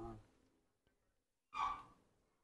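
A person sighing twice, softly: a voiced sigh trailing off at the start, then a short breathy one near the end.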